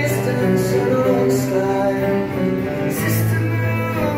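Live acoustic band music: three acoustic guitars playing together at a steady loudness, heard from the audience in a club.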